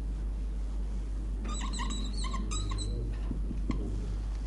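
Marker squeaking on a whiteboard in a run of short, high chirps as a word is written, lasting about a second in the middle, over a steady low hum.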